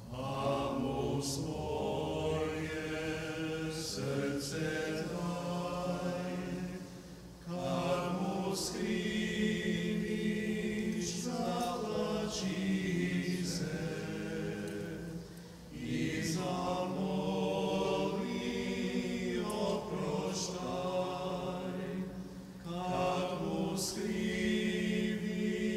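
Voices singing slow Orthodox liturgical chant in long phrases, with brief breaths between them about every seven to eight seconds. This is the chant sung during the clergy's communion.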